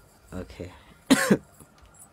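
A person coughing: a short low throat sound, then a louder double cough about a second in.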